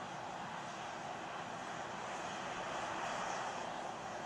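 Steady rushing noise with a faint hum beneath it, swelling slightly near the end: the ambient sound at the launch tower as the caught Super Heavy booster vents vapour.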